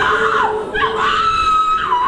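A person's voice crying out in prayer, wavering and then holding one long high wail from about a second in, over a steady low sustained note.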